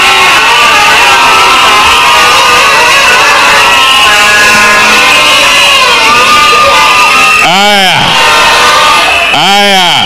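A crowd cheering and shouting, many voices at once. Near the end come two loud whoops, each rising and then falling in pitch.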